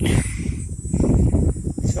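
Uneven low rumble of wind buffeting and handling noise on a handheld microphone.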